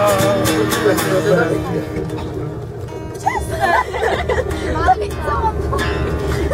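A group singing along to a strummed acoustic guitar inside a coach bus; the song trails off about two seconds in. Voices and chatter follow over the steady low hum of the bus.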